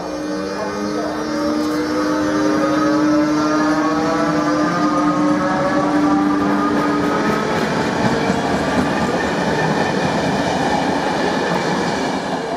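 Czech Railways class 362 electric locomotive pulling passenger coaches out of the station, its traction drive giving a whine of several tones that rise in pitch as it picks up speed, over the rumble and clatter of the coaches' wheels. The sound fades as the train leaves.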